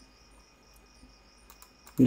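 Quiet room noise with a faint, steady high-pitched whine or chirr, and a few faint ticks near the end.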